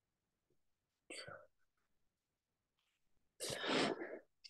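A person's breath near the microphone, heard twice: a short breath about a second in, then a longer, louder one near the end.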